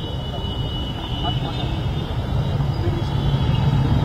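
Steady low rumble of background noise with faint, scattered voices in the pause between a speaker's sentences.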